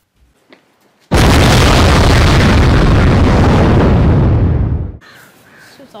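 Film explosion sound effect for a phone bomb going off. One blast starts suddenly about a second in and stays loud, deep and heavy for nearly four seconds. Its hiss thins slightly before it cuts off abruptly.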